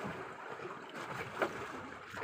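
Steady wind and sea-water noise on a small fishing boat at sea, with one short click about one and a half seconds in.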